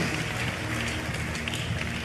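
A pause in the preaching, filled by a soft, steady background music bed over even room noise.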